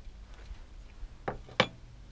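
Two short, sharp knocks about a third of a second apart as a Romet bicycle is handled and lifted: its metal parts clanking.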